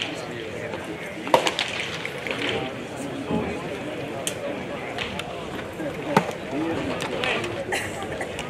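Background chatter of voices around a baseball field, with a sharp pop about a second in as a pitched baseball smacks into the catcher's mitt, and another sharp pop about six seconds in.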